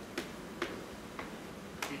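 Chalk on a blackboard: about four sharp taps and clicks as a formula is written out.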